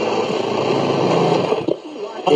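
1959 Motorola 5T27N-1 vacuum tube radio giving out AM static with faint, garbled stations underneath as its tuning dial is turned between stations. The static drops away about three-quarters of the way through.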